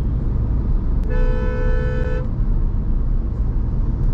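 A car horn sounds once for about a second, over the steady low rumble of road and engine noise inside a moving car's cabin.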